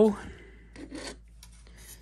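A few faint, short rubs and scrapes of a plastic model-car interior part being picked up and handled in the fingers.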